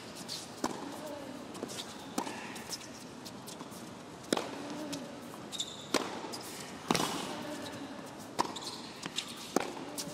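Tennis rally: a ball struck back and forth by rackets, with sharp hits and bounces roughly every one to one and a half seconds; the loudest hits come about four and seven seconds in. A short grunt follows some strokes, over a low murmur from the crowd in the hall.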